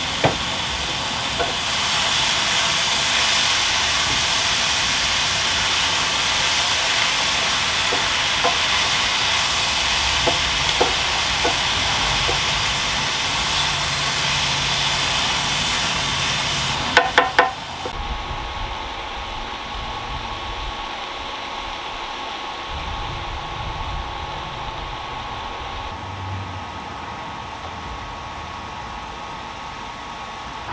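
Vegetables sizzling in a cast-iron skillet, with scattered clicks of a spatula stirring against the pan. About seventeen seconds in there is a quick run of clicks, after which the sizzle drops to a quieter hiss with a faint steady tone.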